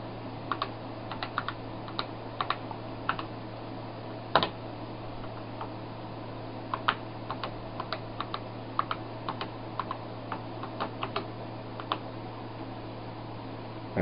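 Keystrokes on an Apple IIe keyboard, single taps and short irregular runs with pauses between them, as a login is typed at the serial terminal, over a steady low hum.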